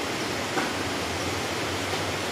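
Steady broadband hiss with no speech: the recording's background noise floor between spoken words.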